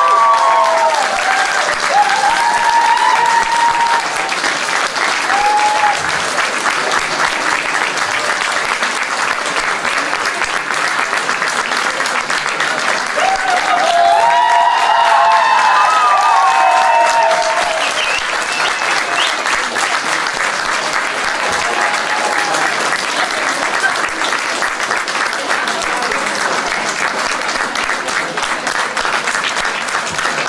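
Audience applauding steadily and at length, with a few raised voices calling out over it near the start and again about fourteen seconds in, where the clapping swells a little.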